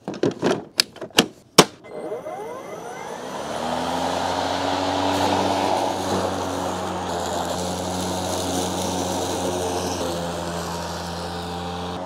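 EGO LM2135SP battery-powered lawn mower: a few sharp clicks as the battery is snapped into place, then the motor and its freshly fitted twin blades spin up with a rising whine about two seconds in. They then run steadily as the mower cuts grass on a test run.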